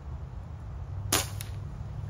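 A single air rifle shot: one sharp crack a little past halfway through, with a fainter crack about a third of a second later.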